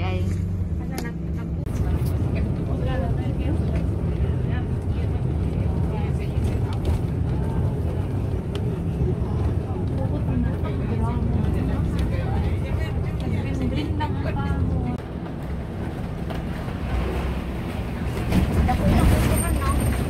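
Engine and road noise of a moving bus heard from inside the cabin, a steady low rumble, with faint passenger voices in the background.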